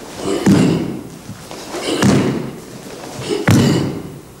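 A karateka's bare feet landing and stamping on a wooden floor, with the cotton gi snapping, as kata techniques are executed. There are three heavy thuds about a second and a half apart, each with a sharp snap and a brief echo off the hall.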